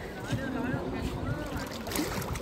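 Pool water sloshing and lapping against the pool wall as a swimmer moves at the edge, with voices in the background.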